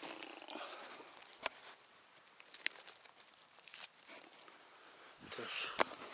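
Footsteps through forest undergrowth: a soft rustle of litter and plants, with a few sharp snaps of twigs underfoot and the loudest snap near the end.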